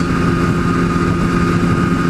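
Kawasaki ZX-10R's inline-four engine running at a steady freeway cruise, an even drone with a thin high whine above it, mixed with wind rumble on the microphone.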